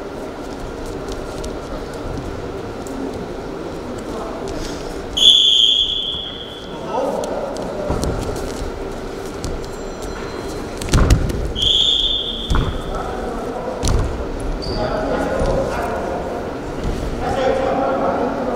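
A referee's whistle blown twice, two sharp blasts about six seconds apart, over voices shouting in a large hall. A heavy thud of bodies hitting the wrestling mat comes just before the second blast, and another a couple of seconds after it.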